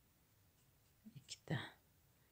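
Quiet room tone, then a brief soft, whisper-like vocal sound from a person about a second and a half in.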